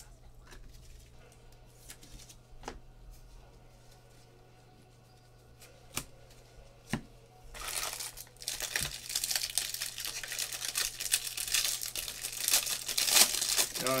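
Foil wrapper of a trading-card pack being torn open and crinkled: a dense run of ripping and crackling starting about halfway in. Before it there are only a few faint clicks.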